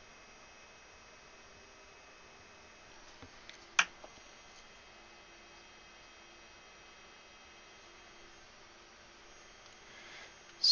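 Quiet room tone with a faint steady hum, broken about four seconds in by one sharp click, with two much fainter ticks just before it.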